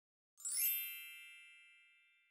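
A single bright, shimmering chime that strikes about half a second in with a sparkle of very high tones and then rings out slowly, fading over the next two seconds.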